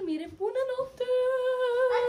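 A young female voice hums or sings a short upward glide, then holds one long, steady note.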